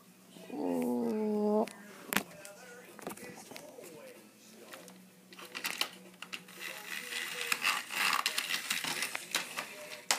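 A child's voice holds a short wavering note near the start, then plastic toy train pieces click and rattle as a toy track tower with a lift is handled, with a sharp click about two seconds in.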